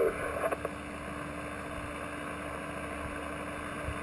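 Shortwave receiver hissing with open-channel HF static on 8.992 MHz during a pause between voice transmissions, with a faint steady low hum under the hiss.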